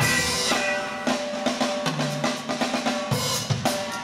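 Live band playing an upbeat groove for breakdancing, the drum kit to the fore with steady kick and snare hits over bass and keyboard, a cymbal crash right at the start.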